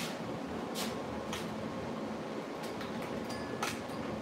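Steady low room noise with a faint hum, broken by a few brief soft clicks and rustles.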